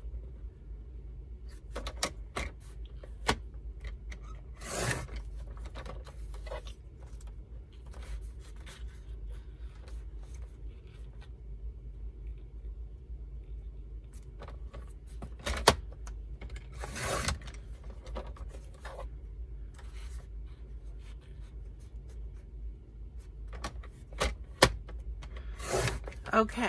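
Paper trimmer's sliding blade cutting strips of paper: three brief rasping swipes several seconds apart, with scattered clicks and paper rustle as the sheet is repositioned against the guide between cuts.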